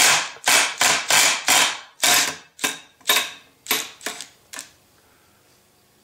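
Small impact wrench hammering in short repeated bursts, about three a second, to undo the 22 mm nut on a Mercedes air pump's clutch pulley. The bursts grow shorter and fainter and stop about four and a half seconds in as the nut comes free.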